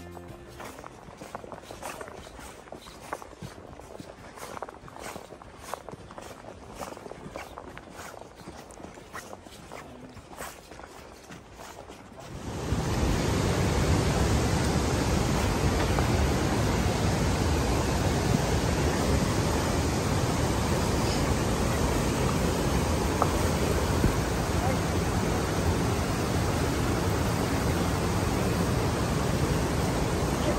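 A quiet stretch with faint clicks and taps. About twelve seconds in, a sudden cut to the steady rush of river rapids, which runs on loudly.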